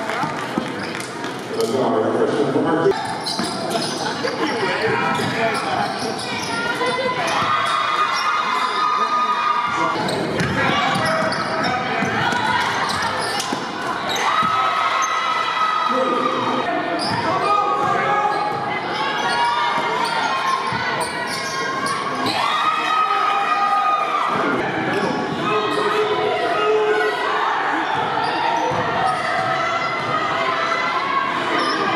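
Basketball game sound in a gymnasium: the ball bouncing on the hardwood floor amid raised, echoing voices of players and spectators, with repeated held calls through the hall.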